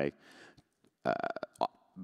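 Speech only: a man ends a phrase, pauses, then gives a short, drawn-out 'uh' into a microphone, with a few faint clicks around it.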